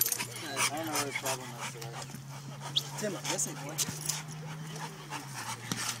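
Two pit bulls playing on wet concrete, with scattered short clicks and splashes of their paws and faint dog sounds.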